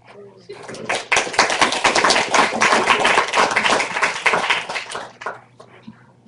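Audience applauding: the clapping starts about half a second in, holds steady, and dies away at about five seconds.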